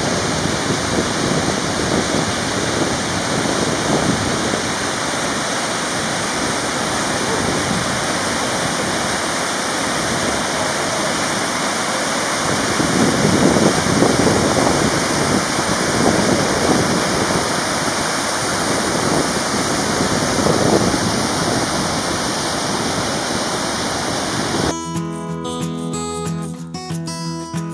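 Mountain river rushing over boulders in a steady whitewater rush, swelling a little louder midway. Near the end it cuts abruptly to strummed acoustic guitar music.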